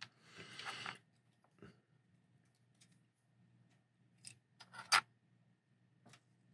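Light clicks and taps of small metal parts being handled: the wheel-and-axle sets of a die-cast toy car being lifted off its bare metal chassis. A soft rustle comes in the first second, then a few scattered clicks, the sharpest about five seconds in.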